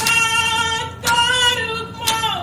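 A woman singing an Indigenous song in long held notes, over a drum struck about once a second.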